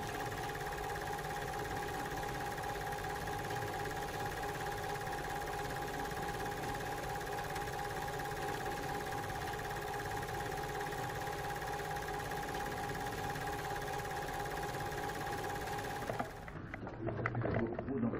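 Film-projector sound effect added in editing: a steady hiss with an even hum of several tones, like a projector mechanism running. It cuts off suddenly near the end.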